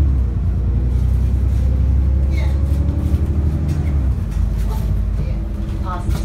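Diesel engine and drivetrain of an ADL Enviro 400 double-decker bus heard from inside the passenger saloon while the bus is under way: a steady low drone with a faint whine above it. About four seconds in, the deep drone drops away as the engine eases off.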